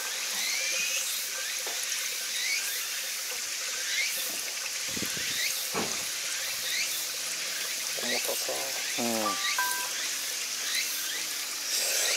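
Diesel fuel pouring from a plastic jerry can through its spout hose into a combine's fuel tank, a steady splashing, gurgling flow.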